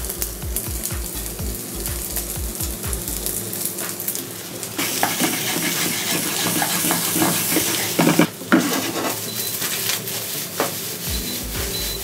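Cooked rice frying in hot olive oil in a nonstick pan, sizzling, while a wooden spoon stirs and scrapes through it. The sizzle grows louder about five seconds in, and there are a couple of sharp knocks around eight seconds.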